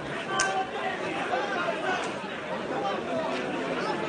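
Indistinct chatter of several people talking and calling over one another, with a brief sharp sound about half a second in.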